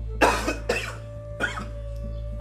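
A man gives a short harsh cough near the start, over steady background music.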